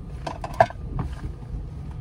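A few clicks and knocks of things being handled inside a vehicle cabin, with one sharp knock about half a second in standing out as the loudest, over a steady low rumble.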